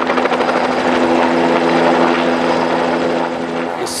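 Helicopter passing overhead: rapid rotor-blade chop over a steady droning tone. It grows louder toward the middle and fades a little near the end.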